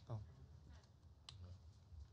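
Near silence: room tone with two faint sharp clicks, one at the start and one a little past halfway, and a short murmured 'mm-hmm' just after the first.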